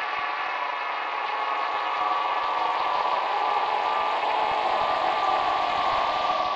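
Logo intro sound effect: a loud synthesized drone or chord of many stacked tones, held steady like a blaring horn.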